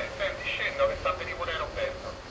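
A voice speaking through a door-entry intercom speaker, thin and tinny with little low end.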